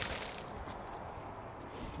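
Anchored foam-tentacle water sampler splashing into a river, a faint splash right at the start, then a low steady outdoor hiss.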